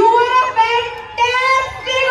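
A woman singing into a stage microphone: three high, held phrases.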